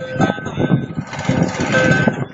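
A small barrel-shaped hand drum played with the hands in a quick rhythm, under a held, sung melody line.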